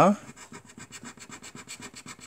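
A coin scratching the silver coating off a paper scratchcard in quick, even back-and-forth strokes, about eight a second.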